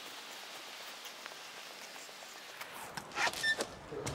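Faint steady outdoor background hiss. In the last second come a few soft clicks and knocks, along with footsteps, as an office door is opened and walked through.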